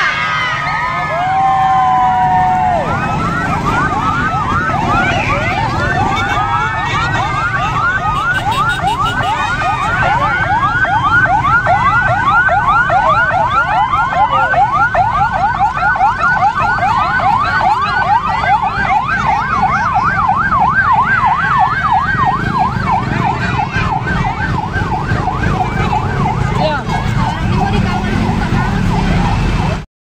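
Ambulance siren in a fast yelp, its pitch sweeping quickly up and down several times a second, over the low rumble of motorcycle and truck engines. It cuts off suddenly at the end.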